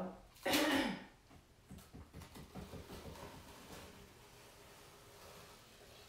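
A person clears their throat, then faint irregular crackling and ticking for about two seconds as painter's tape is peeled off a painted canvas.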